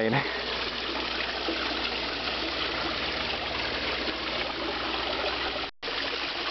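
Steady rushing and splashing of a rock waterfall pouring into a backyard koi pond, with a momentary drop-out near the end.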